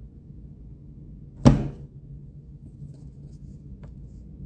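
A single sharp knock or thump about a second and a half in, like a hard object hitting a hard surface, then a faint click near the end, over a low steady room hum.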